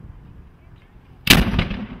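Muzzle-loading cannon fired once: a single loud blast about a second in, followed by an echo that dies away quickly.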